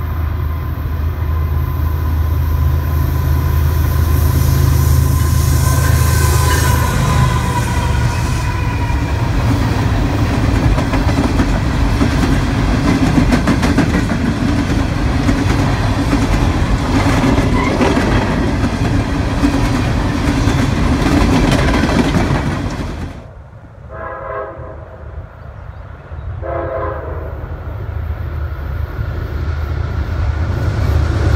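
CSX freight train's diesel locomotives passing close with a deep engine throb, giving way to a long string of coal hopper cars rolling by with steady wheel and rail noise and rhythmic clicking over the rail joints. After an abrupt cut, an Amtrak passenger train sounds two short blasts of its chord horn in the distance, and its diesel locomotives grow louder as it approaches near the end.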